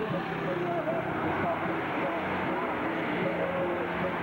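Highway traffic: a vehicle engine running steadily under road noise, with indistinct voices.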